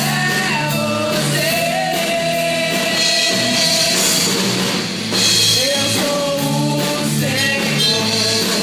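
Youth band playing a Portuguese-language pop-rock song live: several young voices singing together into microphones over drum kit, electric bass and guitars. The voices hold a long note about two seconds in.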